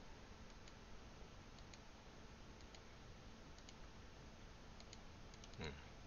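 Faint computer mouse clicks, mostly in quick pairs about a second apart, as notch angles are set one after another in CAD software. A short voice sound comes near the end.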